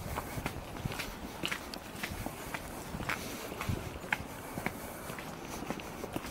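Footsteps on wet asphalt at a steady walking pace, about two steps a second.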